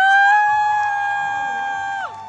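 Long, high-pitched cries from performers' voices: they slide up in pitch at the start and are then held steady, with one voice a little higher than the other. The higher cry drops off right at the end while the lower one carries on.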